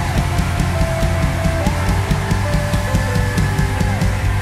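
Live worship band playing loud rock-style music, with a drum kit keeping a steady driving beat under electric guitar and held keyboard tones.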